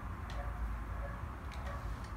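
Conair automatic curl styler being opened and lifted away from a finished curl: a few faint clicks over a low steady rumble.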